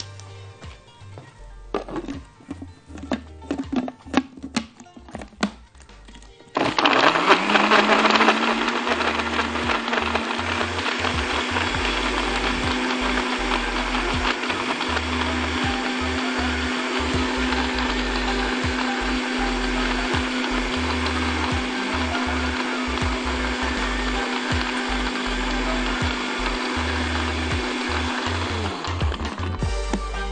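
Countertop electric blender switched on about six and a half seconds in, blending chocolate ice cream, milk, coffee and hazelnuts into a smoothie. The motor runs up fast and holds a steady hum for about twenty seconds, then winds down near the end. Before it starts there are a few light clicks and knocks.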